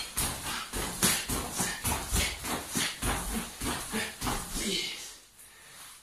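A karateka doing rapid knee raises, one after another: the stiff cotton karate gi swishes and the feet touch down on the floor about three times a second. The strokes stop a little before five seconds in.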